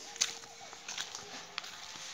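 Footsteps in rubber flip-flops: a few sharp, irregular slaps on paved ground.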